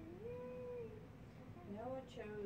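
A cat meowing: one long call that rises and falls in pitch, then a second, rising call near the end.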